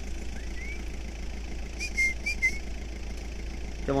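A small bird calling: one short rising chirp near the start, then about four short high notes about two seconds in, over a steady low rumble.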